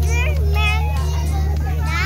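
Children's high-pitched voices and crowd chatter over a steady low hum.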